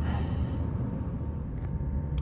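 Steady low background rumble of room noise, with no distinct knocks, clicks or tool sounds.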